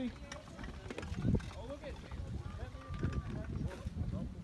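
Indistinct voices of onlookers talking and calling, with some low rumbling under them.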